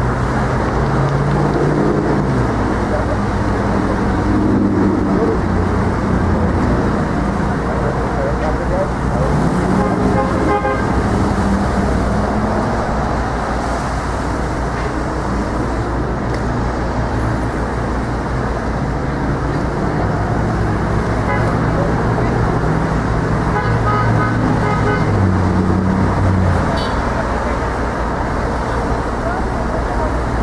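Heavy city street traffic at an intersection: cars and taxis driving past with a steady road noise. Engines rise in pitch several times as vehicles pull through.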